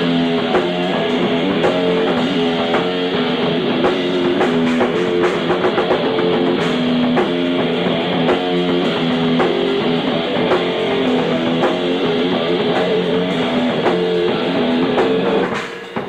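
Live rock band playing an electric guitar riff over drums, with no singing. The music cuts off just before the end.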